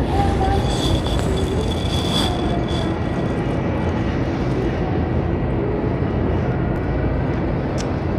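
Steady low rumble of grocery store background noise, with faint distant voices and a thin high whine in the first few seconds.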